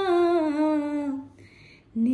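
A woman singing a Bhojpuri folk song without accompaniment, holding one long note that slowly sinks in pitch and fades out a little over a second in.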